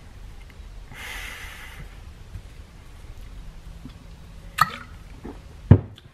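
A breath out through the nose about a second in, then a short click and, near the end, a sharp knock, the loudest sound, as a ratchet is picked up from the table.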